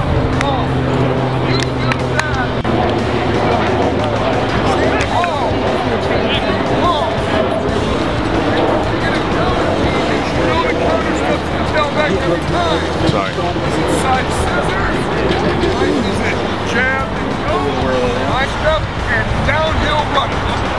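Background music mixed with indistinct shouts and chatter from players and coaches at football practice.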